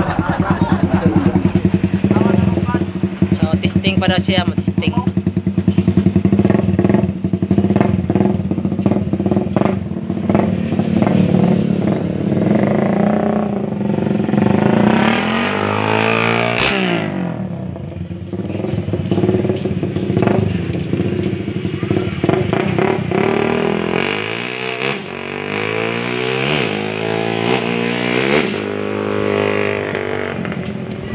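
Small single-cylinder underbone motorcycle engine idling steadily with an even beat. About halfway through, motorcycles rev and ride past, their engine pitch rising and falling, with more passes near the end.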